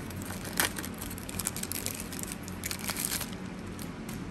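Crinkling and tearing of a trading card pack wrapper as it is ripped open and the cards are pulled out: a run of irregular crackles that thins out near the end.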